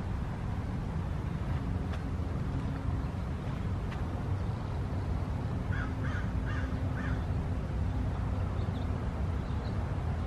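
A bird calls four times in quick succession over a steady low outdoor rumble.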